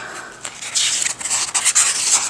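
Paper rustling and rubbing as the pages of a comic book are handled and turned. The rustle grows louder about half a second in.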